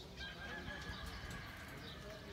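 A faint, long high-pitched animal call, rising slightly at first and then held nearly steady for about a second and a half, over a low background rumble.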